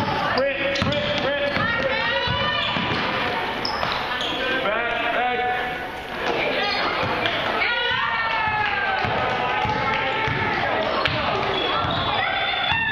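Basketball game in a gym: a ball bouncing on the hardwood court, sneakers squeaking, and players and spectators calling out, all echoing in the large hall.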